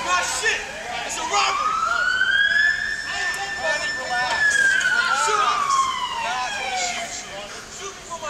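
Emergency vehicle siren giving one slow wail: it rises over a couple of seconds, holds high, then falls away, under the sound of voices.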